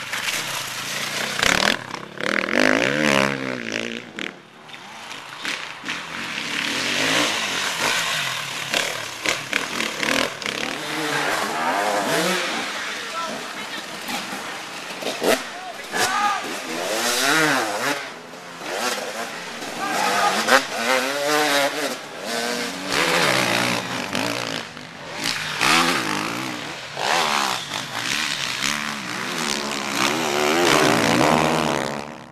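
Off-road enduro motorcycle engines revving up and down hard as riders push through dirt and a steep muddy climb. Voices can be heard at times, and the sound changes abruptly several times.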